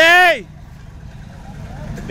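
A man's loud, drawn-out shout whose pitch rises and then falls, lasting about half a second at the start, followed by a low outdoor rumble and crowd background.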